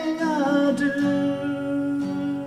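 A man singing a long held note over acoustic guitar, his voice sliding down a little about half a second in before settling on a steady pitch.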